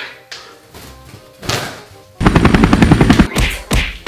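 A rapid burst of loud, gunfire-like bangs, more than ten a second for about a second, followed by a few single bangs near the end.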